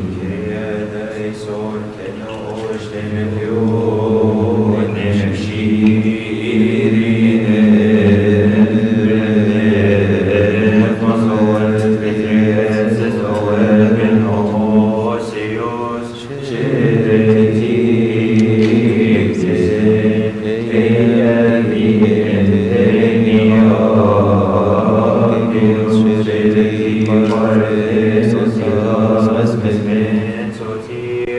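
Coptic Orthodox liturgical chant: voices in unison sing a hymn in long, drawn-out lines. There is a short break about sixteen seconds in, after which a new verse begins.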